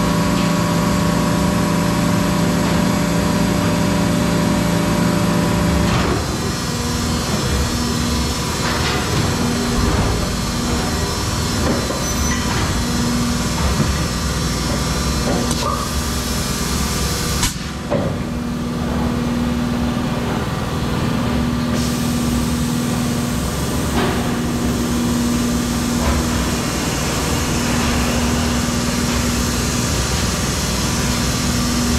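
Plastic injection moulding machine running on the factory floor: a steady machine hum that changes abruptly about six seconds in, then a tone that switches on and off, with scattered knocks and clunks from the machine.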